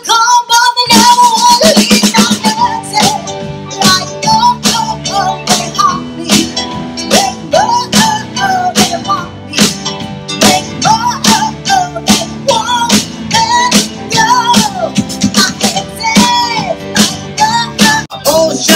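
Live pop-rock band playing: a steady drum beat under electric guitars, bass and keyboard, with a melody line that bends in pitch over the top.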